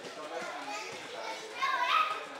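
Children's voices and chatter, with a louder, high-pitched child's voice near the end.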